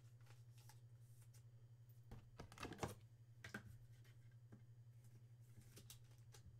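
Faint rustling and light clicks of plastic as a trading card is handled and slid into a soft sleeve and a rigid top-loader, loudest between about two and three seconds in, over a low steady hum.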